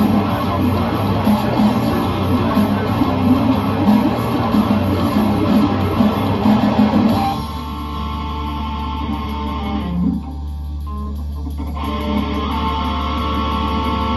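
Two overdubbed electric guitars play a heavy rock riff over a backing track of drums and bass. About seven seconds in, the dense playing thins to a sparser guitar part over a held low bass note, with a brief break in the guitar a few seconds later.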